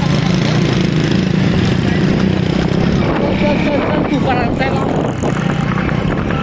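Motorcycle engines running steadily at close range. From about three seconds in, men shout and call over the engine noise.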